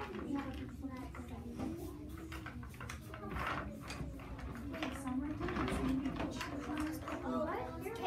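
Indistinct chatter of children's voices, with scattered light knocks and rustles and a steady low hum.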